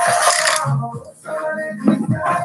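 Aerosol spray-paint can giving a short test-spray hiss of about half a second, fired to clear the valve so colour comes out, over background music.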